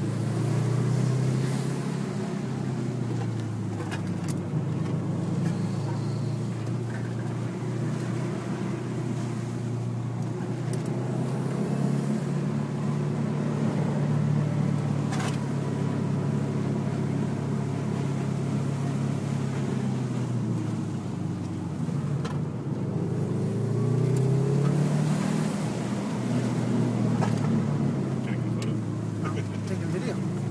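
Subaru WRX's turbocharged flat-four engine heard from inside the cabin while driving, its revs rising and falling with the throttle, including a clear climb about three quarters of the way through.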